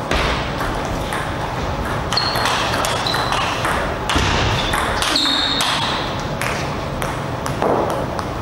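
A table tennis rally: the celluloid ball is struck back and forth with sharp, irregular clicks of bat and table. Several short high squeaks, typical of players' shoes on the court floor, come between the hits.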